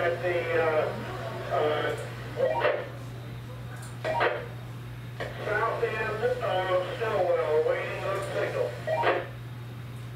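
Talk in stretches over a two-way radio, the voices thin with no top end. A few short crackling bursts fall between the transmissions, over a steady low hum.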